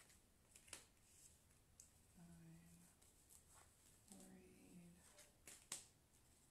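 Faint handling of a deck of tarot cards being shuffled and dealt, heard as a few soft sharp clicks of card on card. Two brief quiet hums of a voice come in the middle.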